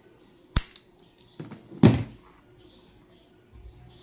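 Steel scissors being handled: a sharp click about half a second in, then a louder clunk near two seconds as they are put down on the cardboard-covered table. Faint rustling from the cable being handled.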